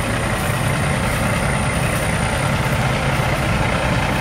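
Semi-truck diesel engine idling steadily, an even low hum that does not change.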